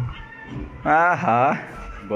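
A high voice with wavering, sliding pitch sounds twice in quick succession about a second in.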